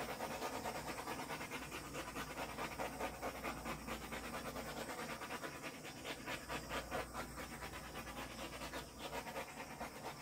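A dog panting steadily, about four breaths a second.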